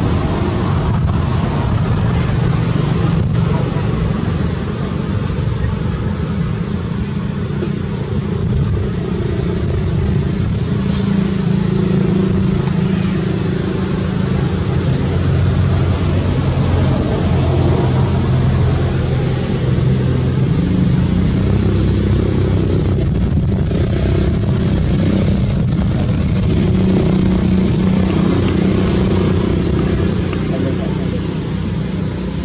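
Steady low hum of a running motor engine, shifting a little in pitch now and then.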